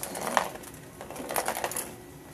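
A self-propelled plastic ball rolling around the plastic track of a cat toy, rattling with irregular clicks, one sharp click about a third of a second in and a run of clicks a little past halfway.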